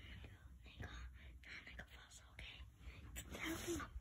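Soft whispering: a faint, breathy voice without voiced pitch, coming in short stretches.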